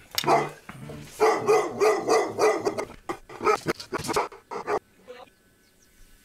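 A dog barking repeatedly in quick bursts, mixed with a person's voice, dying down about five seconds in.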